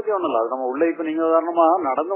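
A man speaking continuously in Tamil.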